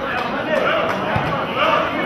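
Several people's voices shouting and calling over one another on the football ground, swelling near the end as the shot goes toward goal. There is a single dull thump about a second in.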